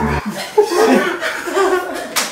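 Two men laughing in short bursts of chuckling.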